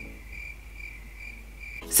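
Crickets chirping in a steady, slightly pulsing high trill: the stock 'crickets' sound effect for an awkward silence with no answer.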